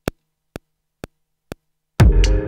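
Akai MPC One metronome count-in: four short clicks evenly spaced about two a second, the first one louder as the accented downbeat.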